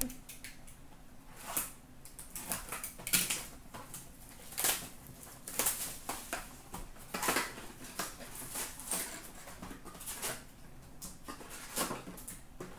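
Hands opening a cardboard box of hockey cards and lifting out the card packs: a string of short rustles, crinkles and scrapes, irregular, about one every second.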